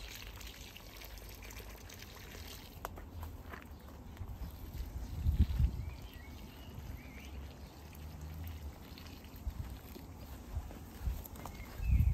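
Water pouring onto soil and plants while a bed is watered, over a low rumble of wind on the microphone, with a dull thump about halfway through.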